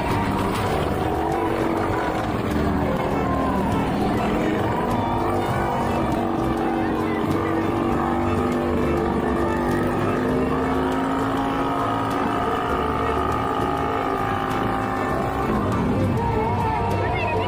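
Small motorcycle engine inside a wooden wall-of-death drum. Its pitch falls as the rider comes down off the wall, then it runs steadily at low revs, and it drops away near the end as the bike comes to rest.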